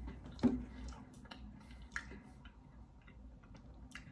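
Soft, scattered mouth clicks and smacks of a man chewing a cookie close to the microphone, with a sharper click about half a second in.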